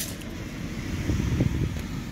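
Wind rumbling on the microphone, with waves breaking and washing onto a shingle beach underneath.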